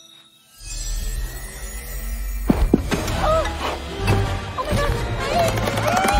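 Cartoon sound effects of a high-powered vacuum gadget switching on, over film score. About half a second in, a steady low hum starts with a faint rising whine. Sharp knocks and gliding squeals follow from about two and a half seconds in.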